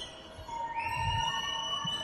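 A basketball bouncing on the court, a dull thump about once a second. Over it run long, steady, high-pitched tones, the second starting with a short upward slide about a second in.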